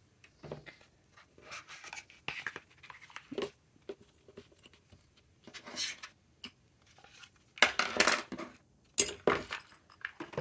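Pens and a pen case handled on a tabletop: scattered light clicks and clinks as they are picked up and set down, with a louder clatter near the end.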